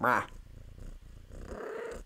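Domestic cat purring close to the microphone, a low, steady, grainy sound that swells a little near the end. A brief voice sound comes first, right at the start.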